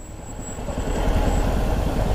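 Yamaha R15's single-cylinder engine running at low road speed, a steady low rumble that grows louder over the first second.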